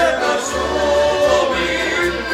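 Live folk band: several men singing together in harmony over accordion, acoustic guitar, plucked lutes and double bass.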